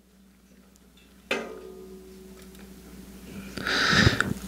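Handheld microphone being switched on and handled: a sudden thump about a second in, then a faint steady hum, and rustling handling noise that grows near the end.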